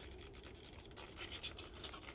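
Faint scratching and rubbing handling noise as the foam model airplane is tilted, with a few light ticks in the second half.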